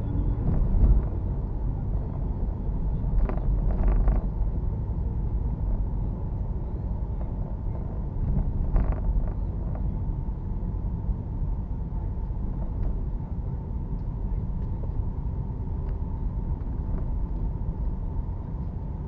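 Car driving slowly along a city street, heard from inside the cabin: a steady low rumble of engine and road noise, with a few brief knocks in the first half.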